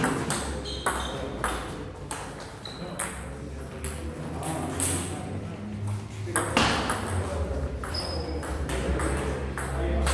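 Table-tennis rally: the ball clicks sharply off the rackets and the table, about two clicks a second.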